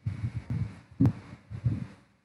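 A few dull low thumps, with one sharp click about a second in.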